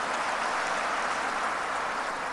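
Audience applauding steadily in a large open venue, a fairly quiet, even patter.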